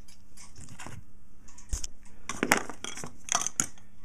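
Small metal parts clinking and clicking as they are picked up and handled, in a scatter of light knocks that is busiest in the second half.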